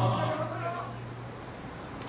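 Steady high-pitched insect song in a lull between the bearers' chants, with the last of the chanting voices and a low hum dying away in the first second and a half.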